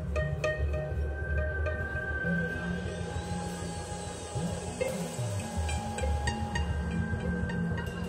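Live band playing slow instrumental music through the PA: long held tones over changing low bass notes, with scattered clicks and small sounds on top.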